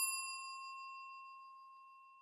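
A single bell-like ding from a subscribe-button sound effect, struck just before and ringing out with fainter higher tones above it, fading away over about two seconds.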